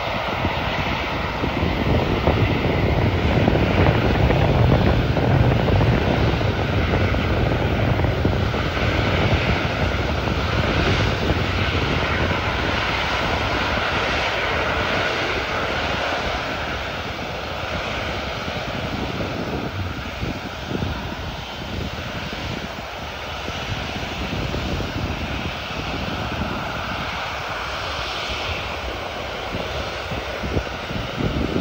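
Jet engines of an Airbus A380 running while the airliner moves slowly on the ground: a steady engine noise with a faint steady whine in it. It is loudest a few seconds in and eases off gradually.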